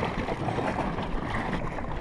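Steady wind and water noise around an anchored inflatable dinghy, with snorkelers swimming close by.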